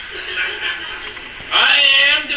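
Comedy-sketch dialogue from a television: a voice talking quietly, then about one and a half seconds in a sudden loud, high-pitched voice.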